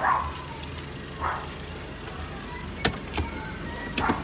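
Suzuki Every Wagon DA64W's small turbocharged three-cylinder engine idling with a steady low hum, and a sharp click nearly three seconds in.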